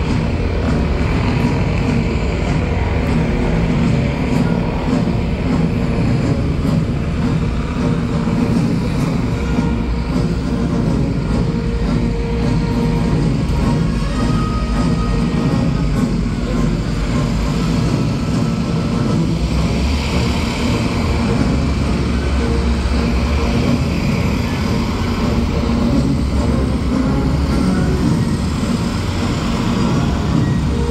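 Loud, steady engine noise from the stunt vehicles, a motorcycle and a propeller plane on the stage, with music playing underneath.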